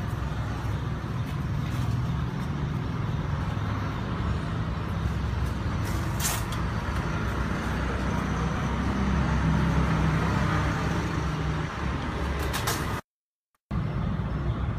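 Steady low rumble of a running motor vehicle engine. It cuts out abruptly to silence for under a second near the end.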